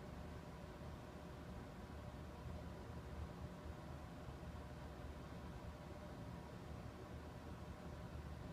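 Quiet room tone with a steady low hum, and no received audio from the radio's speaker.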